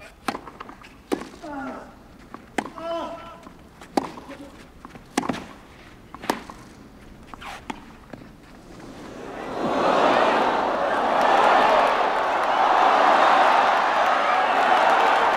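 Clay-court tennis rally: seven sharp racket strikes on the ball, about one every second and a quarter, with a player's grunt on two of the shots. About nine seconds in, the crowd breaks into loud cheering and applause that carries on.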